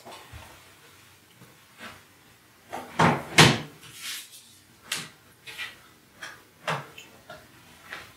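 A series of short knocks and clunks, about half a dozen, the loudest two close together about three seconds in.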